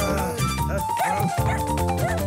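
Cartoon background music with a small puppy giving a few short, high barks over it.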